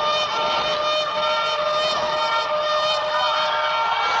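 Several car horns blaring together as steady, held tones of different pitches over a loud, continuous street din.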